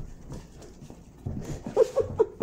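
Small dog playing with a coconut toy on a hardwood floor: hollow knocks and scuffles of the toy and paws on the wood, growing busier about a second in. Near the end come a few short, sharp sounds from the dog.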